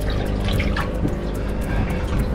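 Water sloshing and dripping around the hull in small irregular splashes, over steady background music.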